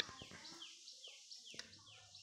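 A bird chirping faintly in the background: a quick series of short, falling chirps, after a click at the very start.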